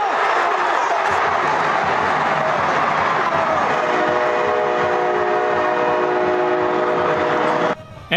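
Loud stadium crowd noise, joined about four seconds in by a horn sounding a steady chord of several notes. The horn and crowd cut off together just before the end.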